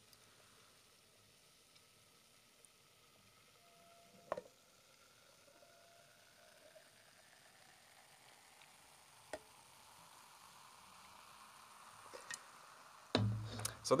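Beer pouring from a large can into a one-litre glass mug, faint, with a pitch that rises slowly as the mug fills. Foam fizzes more and more toward the end. There are two light knocks, one about four seconds in and one about nine seconds in.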